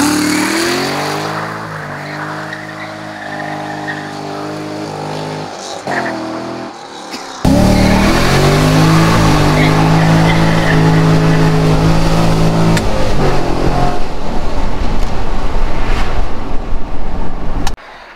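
2010 Chevrolet Corvette's 6.2-litre V8 revving hard under acceleration, its pitch climbing and then holding high. About seven seconds in it becomes suddenly louder and closer, heard from inside the cabin. Near the end the engine note gives way to a rush of tyre squeal as the car slides.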